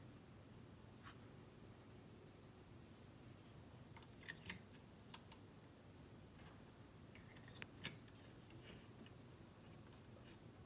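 Near silence with a few faint, sharp clicks of small plastic toy-gun shell casings being handled and loaded by hand: one about a second in, then close pairs about four and a half and seven and a half seconds in.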